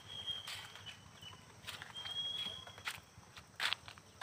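Metal ladle stirring and scraping vegetables in an aluminium kadhai: a few faint, irregular scrapes and knocks against the pan.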